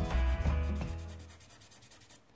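Fingertips rubbing quickly back and forth over a soft chalk pastel swatch on paper, smudging the pastel, with a dry scratchy sound. Background music with a deep bass plays under it and fades out about halfway through.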